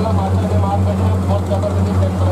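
Boat engine running steadily with a low, slightly pulsing drone, heard from on board, with people's voices talking underneath.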